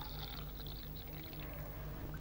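Hot water being poured into a glass of instant herbal tea granules, a faint steady pouring sound over a low steady hum.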